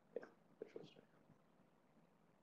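Near silence, broken in the first second by a few faint, brief syllables of a low or whispered voice.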